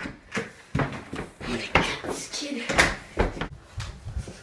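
Interior door being handled, followed by a quick run of footsteps and bumps on carpeted stairs, heard as a string of sharp knocks.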